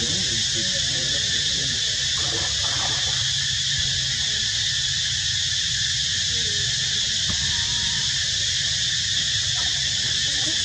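Faint squeaks and short calls of long-tailed macaques, mostly in the first few seconds, over a steady high-pitched hiss.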